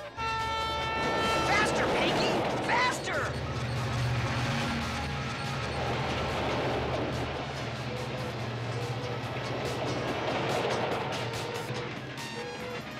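Cartoon train sound effects: a whistle blast about a second long at the start, then the steady low rumble of a moving train under background music.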